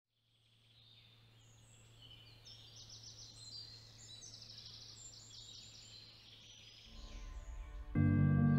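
Faint birdsong fading in: several small birds chirping and trilling over a low steady hum. Music begins to swell in the last second.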